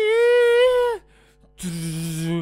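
A man's voice singing two held notes: a high one lasting about a second that bends down as it ends, then, after a short gap, a much lower one near the end.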